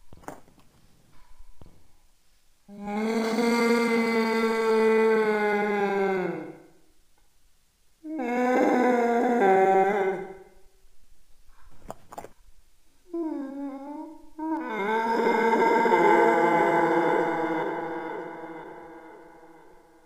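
A voice holding long, steady notes, four of them with pauses between, the last the longest.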